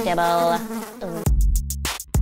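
A fly buzzing, wavering up and down in pitch. About a second in, it gives way to electronic music with a drum-machine beat.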